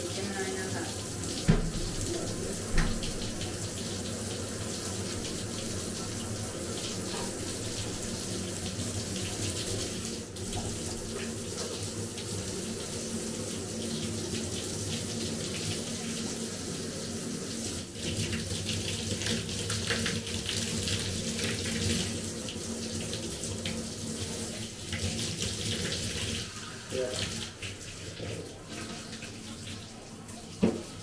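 Water running steadily from a handheld dog shower head, louder for a few seconds past the middle. Two sharp knocks come near the start.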